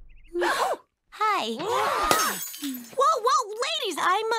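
A glass shoe smashed: a sharp shatter about two seconds in, with fine glass tinkling after it. It is mixed with short animated-character exclamations and gasps.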